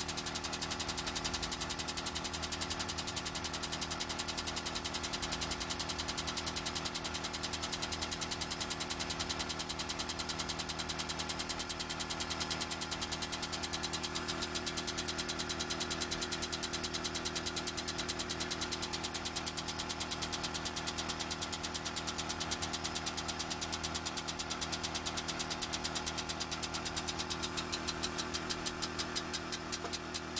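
Hydraulic press pump running steadily under load with a rapid, regular pulsing over a low hum while the ram slowly compresses a sponge; near the end the pulses slow and stand out more clearly.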